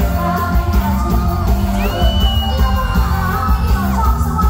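Loud live band music with a steady beat from bass guitar and drums, and singing over it.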